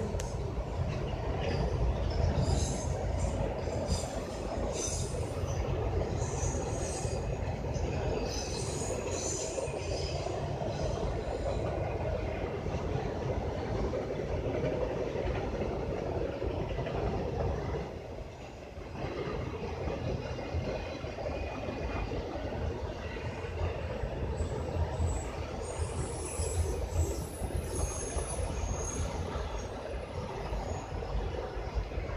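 Freight train of autorack cars rolling past: a steady rumble of steel wheels on rail, with scattered high-pitched squeals in the first ten seconds and again near the end. The rumble dips briefly a little past halfway.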